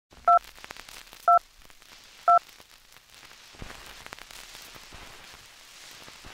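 Film countdown-leader beeps: three short identical beeps about a second apart, then a faint crackle with scattered clicks like worn film or record noise.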